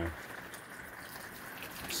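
Water pouring from a plastic gallon jug onto the soil of a potted plant, a steady soft trickle.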